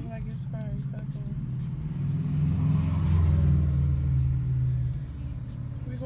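Traffic heard from inside a car waiting at a red light: a low steady hum, and a vehicle passing close by that swells and fades between about two and five seconds in.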